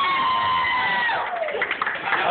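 A voice holding one long high sung note, which slides down and breaks off a little past a second in, followed by shouts and cheering from the group.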